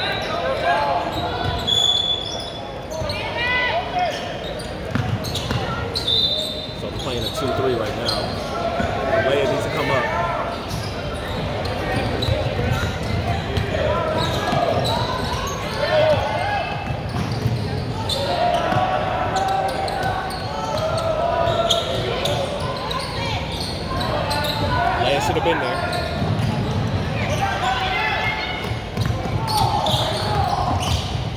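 Basketball game in a gym: a basketball bouncing on the hardwood floor amid voices of players and spectators, echoing in the large hall. A few brief high squeaks come in the first seconds.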